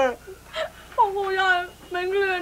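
An adult crying aloud: a short falling wail, a sharp sobbing breath, then one long drawn-out wailing cry.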